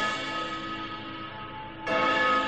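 Bell-like chimes rich in overtones. One strike rings and slowly fades, and a second strike comes near the end. This is a musical transition marking a scene break in the audiobook narration.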